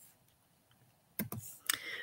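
Near silence, then a few short clicks of a computer's keys or buttons in the second half, as the slide is advanced.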